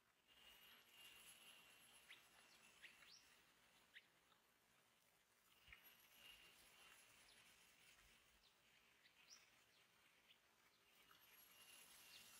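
Faint forest ambience: scattered short, high, rising bird chirps over thin, steady high-pitched insect whines that come and go in stretches of a second or two.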